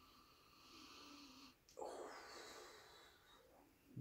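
A man sniffing a glass of beer to take in its aroma: two long, quiet breaths in through the nose, the second louder than the first.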